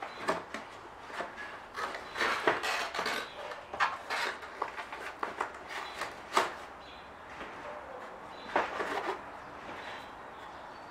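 Cardboard packaging being handled: inserts scraped and lifted out of a cardboard box, rustling and rubbing in irregular bouts, loudest about two to three seconds in and again about six seconds in.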